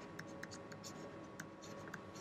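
Faint scratching and small ticks of a pen stylus writing on a tablet, a few short strokes after one another, over a faint steady hum.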